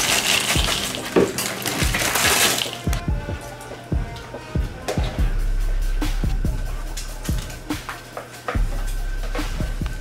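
Dry cereal pouring from a plastic bag into a plastic bowl, a dense rattling rush that stops about three seconds in. Background music with a steady beat plays under it and carries on alone afterwards.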